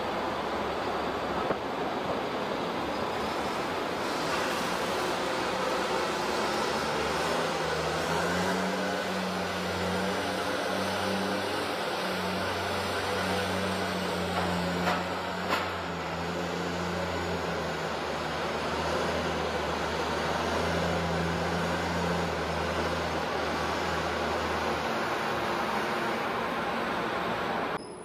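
Heavy vehicle engine running under a steady wash of machine noise, its low hum coming in about seven seconds in and dropping away near the end, with a couple of brief knocks in the middle.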